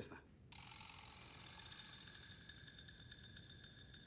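Near silence: faint room tone, a soft hiss with a thin steady high hum and faint quick ticking.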